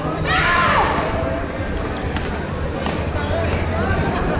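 Sports shoes squeaking on a badminton court floor, a short cluster of squeaks about half a second in, over the chatter of people in a large indoor hall.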